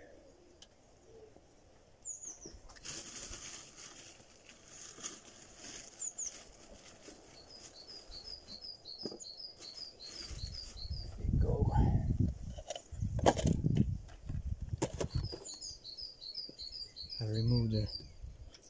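Birds chirping, with short high calls and two rapid runs of even, repeated chirps. Two loud, low rustling bursts come about two thirds of the way through.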